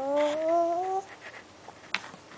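A toddler humming one note with the lips closed on a sippy-cup straw. The hum rises steadily in pitch for about a second and stops. A short click follows near the end.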